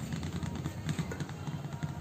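Metal spoon scraping and clicking against a steel bowl in small irregular ticks while stirring rice flour into jaggery water.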